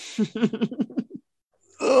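A man laughing in short, quick pulses for about a second, then stopping.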